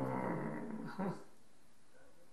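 A man's low, drawn-out wordless vocal sound, a hum or grunt lasting about a second, then a shorter one right after it.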